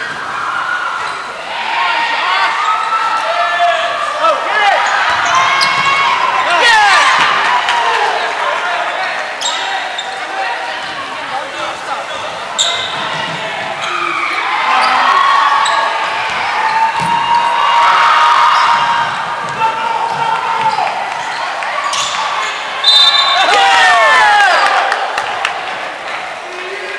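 Basketball game in a gym: the ball bouncing on the hardwood court, sneakers squeaking, and voices of players and spectators calling out, with the echo of a large hall.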